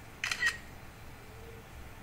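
A short camera-shutter click about a quarter second in, the sound a phone plays when taking a screenshot.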